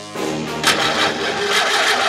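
A car engine-start sound effect: a noisy whir building up from the start and growing stronger about half a second in, with background music under it.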